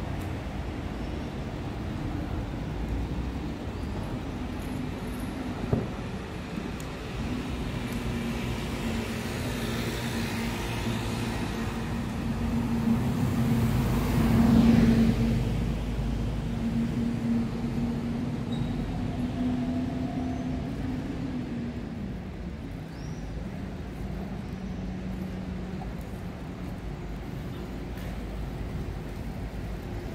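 Street traffic: a steady rumble of cars on the road, with one vehicle's engine hum building, passing loudest about halfway through, then fading. A single sharp knock sounds about six seconds in.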